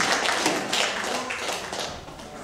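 Scattered hand-clapping from a small congregation, thinning out and fading near the end.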